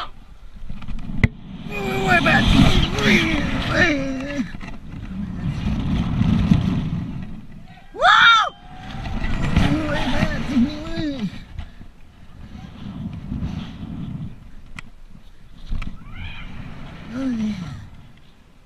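A man yelling and screaming in free fall on a bungee jump, over loud rushing wind buffeting the camera microphone; one short, very loud cry rises and falls about eight seconds in.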